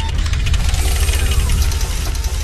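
Loud sound effect of an animated logo sting: a deep rumble with rapid clatter and a falling sweep through the middle.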